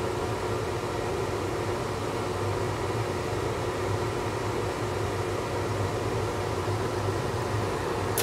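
A laminar flow hood's fan runs steadily: an even hum with airy noise.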